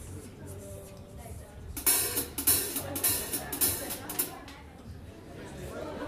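Ludwig drum kit played in a short flurry of drum hits and cymbal crashes starting about two seconds in and lasting a couple of seconds, then dropping back. This is the start of a jazz drum solo.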